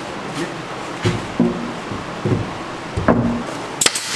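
Background acoustic guitar music with single plucked notes. Just before the end, a nail gun fires once with a sharp snap.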